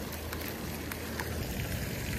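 Steady splashing hiss of a pond's spray fountain, with wind rumbling on the microphone and a few faint ticks.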